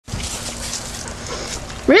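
Border Collie panting rapidly with a rhythm of about four breaths a second, a sign of overheating during a Border Collie Collapse episode. Just before the end a person calls the dog's name loudly.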